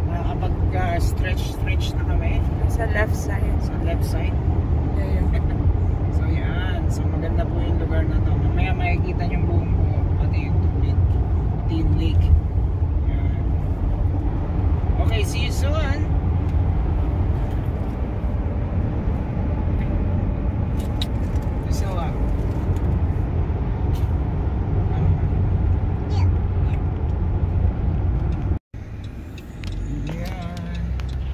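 Steady road and engine drone inside a car's cabin at highway speed, with voices talking indistinctly now and then. The sound drops out abruptly for a moment near the end.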